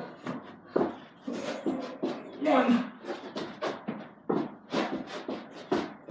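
A person doing burpees on a carpeted floor: a string of irregular soft thuds and shuffles as hands and feet land and push off the carpet, with a brief voice sound about two and a half seconds in.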